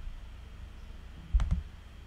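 Two quick clicks, a fraction of a second apart, about a second and a half in, over a faint low rumble of room noise.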